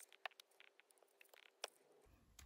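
Near silence with a few faint clicks and light paper handling as a glued card circle is set down and pressed onto paper; the clearest clicks come about a quarter second in and near the end.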